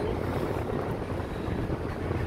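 Steady road and engine noise inside a moving car's cabin, a low even rumble.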